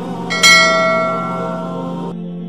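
A single bell strike about half a second in, ringing on and slowly fading over a steady low background drone.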